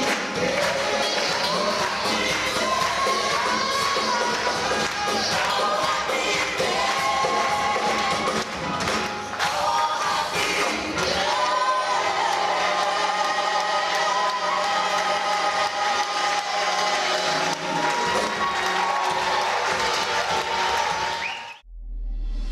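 A live gospel choir of several women's and men's voices singing with a band of keyboards, drums and electric guitar. The music cuts off suddenly near the end.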